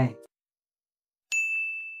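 A single bright bell-like chime, a sound effect for a title-card transition, strikes just over a second in after silence and rings out, fading slowly.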